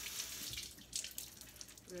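Kitchen faucet running into the sink, with spinach leaves being rinsed under the stream and a few small splashes.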